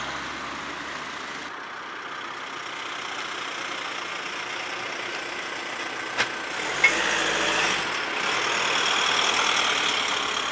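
A motor vehicle engine idling steadily, with two short, sharp clicks about six and seven seconds in.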